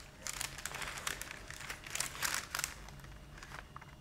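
Baking paper crinkling as it is gripped and handled around a plate, in quick irregular rustles for about the first two and a half seconds, then quieter.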